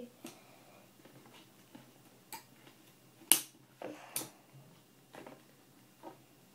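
Scattered small clicks and taps of hands working a mood ring free of its plastic packaging, with one sharp, louder click a little past the middle.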